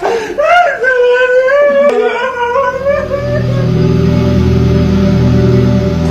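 A grieving relative wailing and sobbing over a death, the voice rising and falling in long drawn-out cries that fade out about three seconds in. Sustained low, steady music chords come in about two seconds in and carry on to the end.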